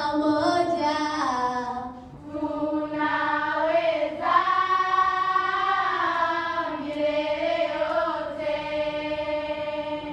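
A choir of girls singing together in long held phrases, with a short breath break about two seconds in.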